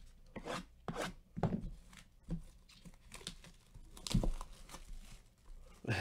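Plastic wrap being torn and crinkled off a sealed cardboard trading-card hobby box, in a string of short rips spread across a few seconds.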